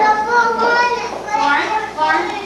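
A group of young children chattering and calling out, several high voices overlapping.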